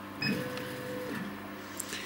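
Chinese CO2 laser cutter running a dot test: a steady whine for under a second, then a lower steady hum.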